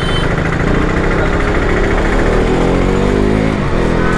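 KTM RC 200's single-cylinder engine heard from the rider's seat, pulling away with its pitch rising steadily for a couple of seconds before easing off, over a steady rush of wind and road noise.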